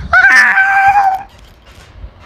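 A woman's high-pitched scream of laughter: one held, shrill note lasting about a second, then breaking off.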